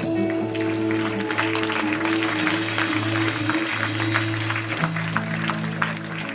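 Live worship band holding sustained keyboard chords while a congregation applauds, the clapping building up from about half a second in.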